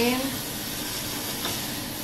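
Steady hiss of meat frying in hot oil inside the covered pot of a Fanlai automatic cooking machine, just after the machine tips the meat in, with a low steady hum underneath.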